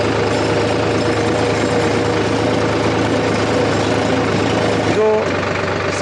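Solis Yanmar 5015 E 4WD tractor's diesel engine running steadily while the tractor drives in second gear with four-wheel drive engaged, with a steady high hum over the engine note.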